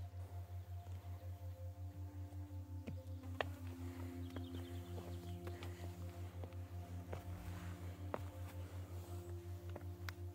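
Quiet background music: soft held notes over a low, evenly pulsing beat, with a few faint clicks and a brief high chirp about four seconds in.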